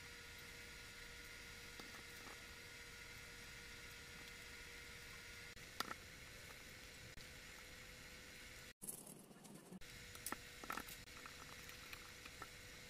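Near silence: faint room tone with a thin steady hum, broken by a few soft, faint clicks about halfway through and again near the end.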